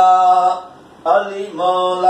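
A man singing a Saraiki devotional kalam solo, with no instruments. He holds a long note, breaks off for a breath about halfway, then starts the next phrase.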